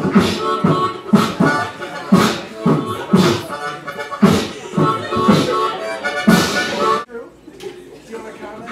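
Harmonica beatboxing: a steady rhythm of vocal kick drums and hissing snares with harmonica chords sounding over it. The beat cuts off abruptly about seven seconds in, leaving something much quieter.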